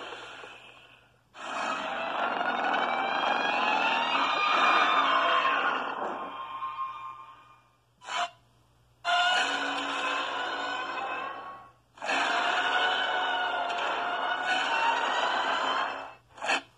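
Kaiju monster screeches voiced for a King Ghidorah toy figure. There are three long, wavering, high-pitched cries of several seconds each, with a short cry just after the first.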